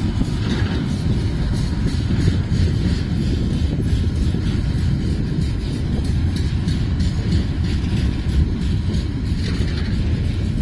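Freight train rolling past: a steady low rumble of the wagons on the track, with a continuous patter of wheel clicks over rail joints.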